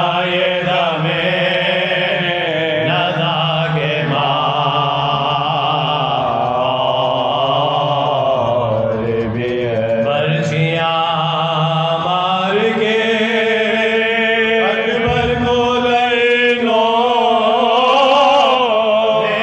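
Soz khwani: a male voice chanting a Shia mourning elegy without instruments, drawing out long notes with wavering ornaments over a steady low held note.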